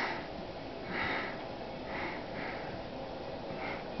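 A few soft sniffs, about a second apart, the second one the loudest.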